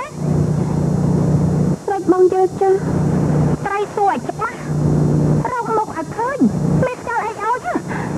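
Film dialogue: women's voices speaking in short lines, with a steady low hum filling the pauses between them.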